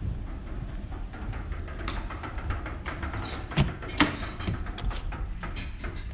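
Footsteps and handling noise over a low steady rumble, then two sharp clicks about three and a half and four seconds in as a car door is opened.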